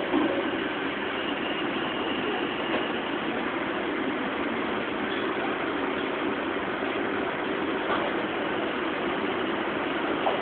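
Steady background hum and hiss at an even level, with no distinct events.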